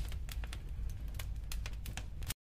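Fire crackling: many scattered sharp crackles over a low rumble.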